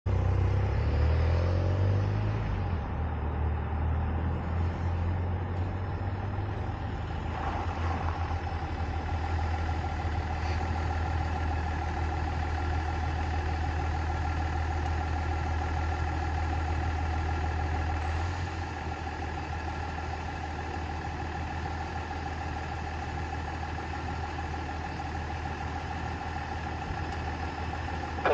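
A car engine idling close by: a low rumble under a steady whine. The rumble drops off about two-thirds of the way through.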